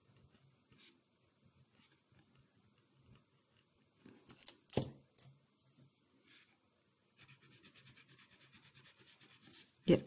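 Faint scratching of a pen writing on paper, a single sharp knock about five seconds in, then from about seven seconds a Micador ColouRush coloured pencil rubbing quickly back and forth on paper in even strokes as a swatch is laid down.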